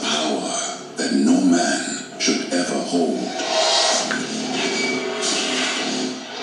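Movie trailer soundtrack from a VHS tape heard through a TV's speaker: music mixed with voices and sound effects, with several bursts of noise in the second half.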